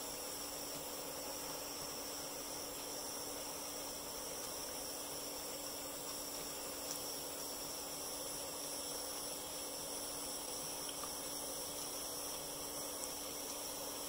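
Power Probe butane soldering iron hissing steadily as it heats a flux-coated copper wire splice, with a faint steady high whine over the hiss.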